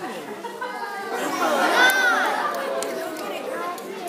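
Chatter of several people talking at once in a large room, with one high-pitched voice rising and falling about two seconds in.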